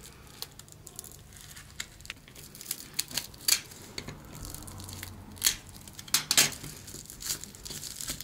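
Paper and a bubble-lined padded envelope being handled, cut with a snap-off craft knife and torn: irregular crinkling and scraping with sharp crackles, loudest a little before halfway and in a cluster about three-quarters through.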